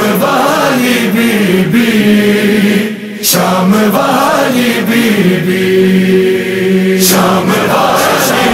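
A voice chanting a noha, a Muharram lament, in long, drawn-out phrases. The chant breaks off briefly about three seconds in and dips again near the end.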